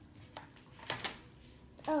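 A single sharp plastic click about a second in, with a fainter click before it: a small plastic piece of toy packaging snapping under a finger.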